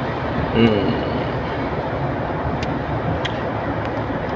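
Steady road and engine noise inside a moving car's cabin. A brief voice sound comes about half a second in, and two faint clicks come in the second half.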